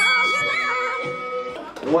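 Short musical stinger for a round-change title card: a bright held note with a voice-like sound over it, cutting off about one and a half seconds in. The host's voice comes back near the end.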